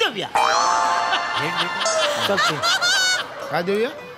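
Short comic music cue from the show's soundtrack: a quick downward swoop, then held notes lasting about three seconds, with voices faintly under it.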